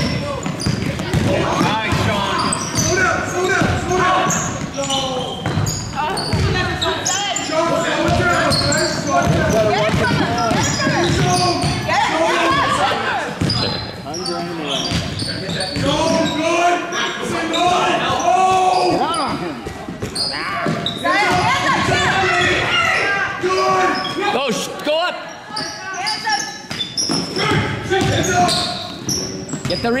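Basketball game in a large gym: a basketball bouncing on the hardwood court as players dribble and run, with voices of players and spectators calling out over it, echoing in the hall.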